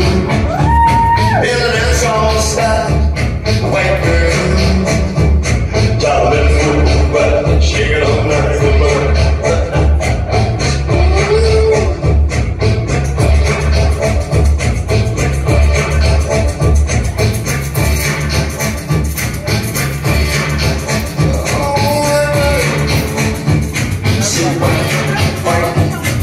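Amplified live music played loud through a PA, with a steady pulsing bass beat and a melody line over it.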